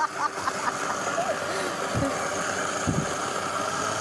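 Countertop blender running steadily, blending a thick oat-and-banana pancake batter, with faint voices beneath.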